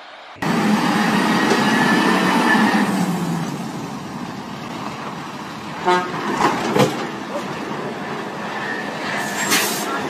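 Heavy tanker truck's diesel engine running as the truck drives, starting abruptly about half a second in. A brief toot about six seconds in, with a few sharp knocks after it and again near the end.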